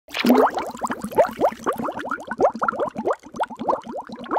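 Animated title-card sound effect: a quick run of short pitched blips, each sliding upward, about five a second.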